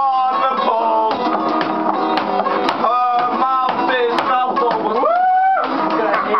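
Acoustic guitar strummed through a song, with voices singing or shouting along over it. About five seconds in, one voice slides up and holds a note.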